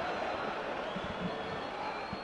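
Steady, even crowd noise from a football stadium, heard as the background of a match broadcast.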